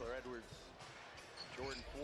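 Basketball being dribbled on a hardwood court, heard faintly in the game broadcast, with a commentator's voice low over it near the start and again near the end.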